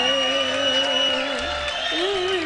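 Live Arabic pop band and singers holding a long note that slides slowly down, with the audience cheering over it; the wavering melody picks up again near the end.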